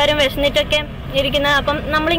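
A woman speaking, with a low rumble of street traffic underneath.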